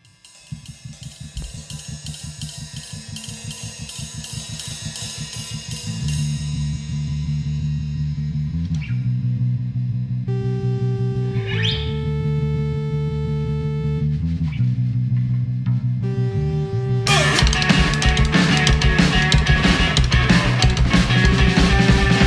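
Live rock band playing a song's instrumental intro: a quiet rhythmic bass-heavy pattern builds steadily, with a few held notes in the middle. About 17 seconds in, the full band with drum kit and cymbals comes in much louder.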